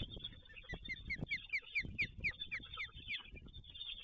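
Black storks calling at the nest as one lands among the young: a quick run of about a dozen short, high notes, each falling in pitch, over a few low thumps from flapping wings on the nest.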